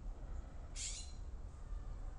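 Quiet room tone with a steady low hum, and one brief high-pitched chirp about three-quarters of a second in.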